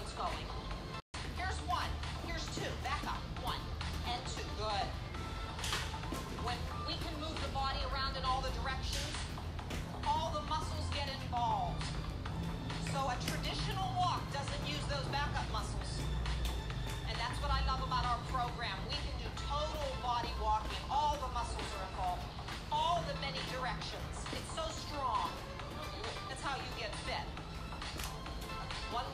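Upbeat workout music with a steady beat, a voice singing or speaking over it throughout. The sound cuts out completely for an instant about a second in.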